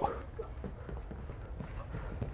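Faint scuffing and soft thuds of wrestlers' shoes and bodies on a foam wrestling mat during a takedown, over a low steady hum.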